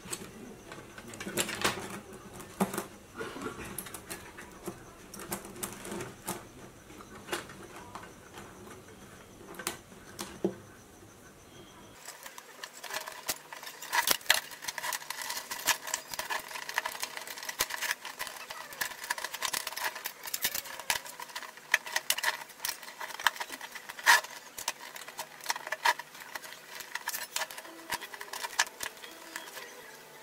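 Steel bicycle chain links clinking and rattling in irregular light clicks as the chain is folded over and bound with wire.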